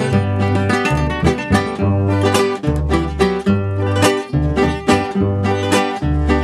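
Instrumental break of a Mexican corrido: plucked guitars playing quick picked notes over an alternating bass line, with no singing.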